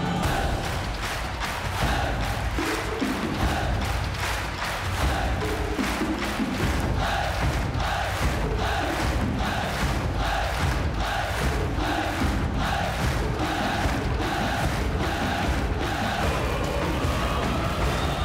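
An ensemble of large Chinese drums beaten in a steady rhythm of about two strokes a second, with music and many voices shouting together on the beat.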